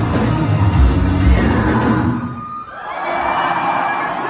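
A live rock band with distorted guitars and drums playing the last loud bars of a song, which ends about two seconds in. A concert crowd then cheers and shouts.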